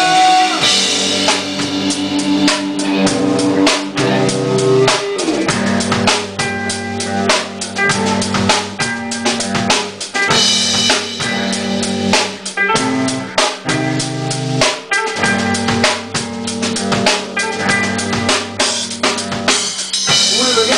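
Live rock band playing, with the drum kit's steady bass drum and snare hits to the fore over electric bass and electric guitars.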